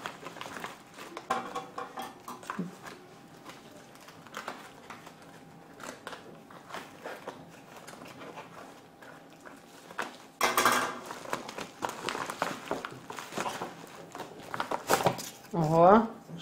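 A postal mailer bag crinkling and rustling as it is torn open by hand, with a louder stretch of tearing and rustling about ten seconds in.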